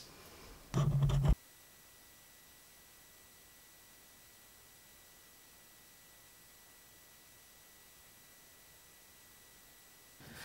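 A short pitched hum, like a voice's 'mm', about a second in that cuts off abruptly. Then near silence for the rest, with only a faint steady high electronic whine.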